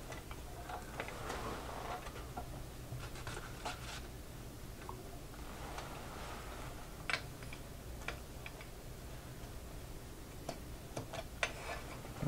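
Faint handling sounds: scattered small clicks and light rustling as a polyurethane cord is worked around a small lathe's pulley, over a steady low hum. The sharpest click comes about seven seconds in.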